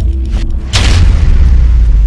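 Cinematic boom for a logo reveal: a sudden loud whoosh-and-boom about three-quarters of a second in, followed by a deep, sustained rumble.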